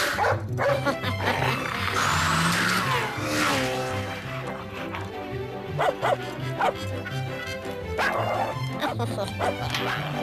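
Cartoon guard dog barking and snarling over a music score with a steady, repeating bass line. The barks come in short bursts in the second half.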